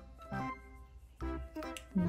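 Soft background music: held electronic-organ-like keyboard notes that change a couple of times.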